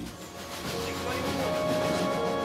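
A train running past, its rushing noise building up steadily, with a few steady held tones over it.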